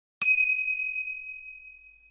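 A single bright bell-like ding sound effect, struck once just after the start and ringing out as it fades over nearly two seconds.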